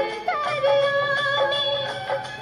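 Hindi devotional song to Shiva (a bhajan): a singing voice gliding into long, held notes.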